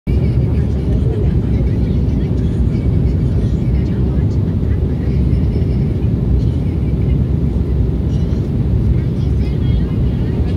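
Steady low rumble of engine and airflow noise inside the passenger cabin of an Embraer 190 jet airliner in flight.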